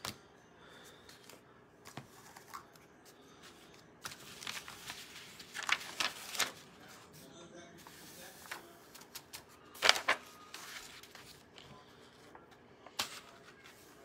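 A sheet of paper rustling and crinkling as it is handled and folded to funnel loose glitter back into its cup. It comes in a few short bursts, the loudest about ten seconds in.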